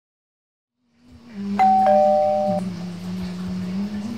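Two-tone doorbell chime, a high note and then a lower one, ringing for about a second from a second and a half in, over a low steady hum.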